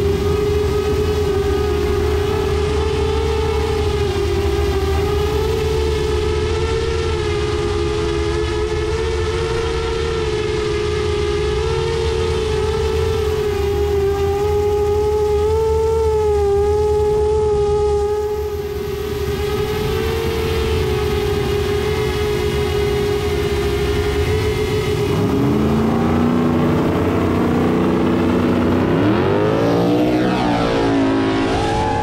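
FPV drone motors whining at a steady, slightly wavering pitch while the drone holds position, over the low rumble of idling drag-car engines. Near the end the pitch sweeps sharply upward twice as the drone or the car speeds up.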